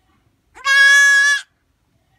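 A young goat kid bleats once: a single loud cry of steady pitch, a little under a second long, about half a second in.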